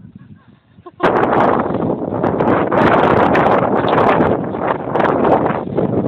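Loud wind buffeting the microphone, starting suddenly about a second in and continuing in rough gusts.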